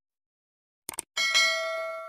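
Subscribe-animation sound effects: a quick double mouse click about a second in, then a notification bell ding that rings on and fades.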